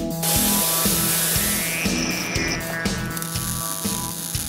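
Intro music with a steady beat. A loud hiss comes in over it just after the start and fades out over the next second and a half.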